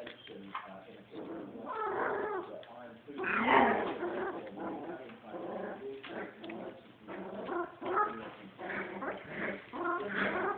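Young border collie puppies, not yet four weeks old, vocalising in a string of short pitched calls as they are handled and play with each other; the loudest call comes about three and a half seconds in.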